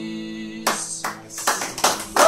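The final chord of an acoustic guitar rings out and fades, then audience applause breaks out about two-thirds of a second in and carries on.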